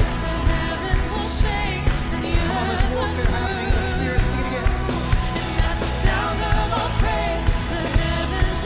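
Live worship band playing: a woman sings lead, with backing voices, over drums, bass and keys, and a steady beat of about two strokes a second.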